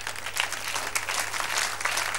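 A studio audience applauding, many hands clapping at once.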